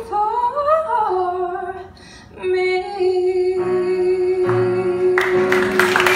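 A woman's voice singing live into a microphone: a winding run up and down in pitch, a short breath, then one long held final note. Audience applause breaks in near the end as the note is held.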